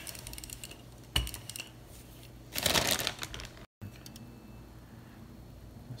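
Wooden rolling pin working dough on a floured silicone baking mat: a sharp knock about a second in, then about a second of louder rolling noise in the middle. The sound drops out for a moment, then only quieter scattered handling clicks follow.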